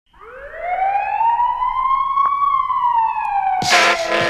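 A single siren wail rises for about two seconds and then slowly sinks, opening a hip-hop track. Near the end the beat drops in with a loud hit and the music starts under the falling siren.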